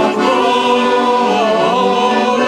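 A crowd singing together like a choir, in long held notes that glide slowly from one pitch to the next.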